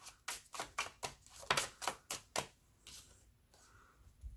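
A tarot deck shuffled by hand: a quick run of sharp card slaps and flicks, about four a second, that stops about two and a half seconds in, followed by fainter handling of the cards.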